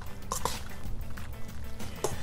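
A spoon stirring a wet macaroni-and-cheese mixture in a stainless steel bowl: soft squishing with a couple of light clinks about half a second in, over faint steady background music.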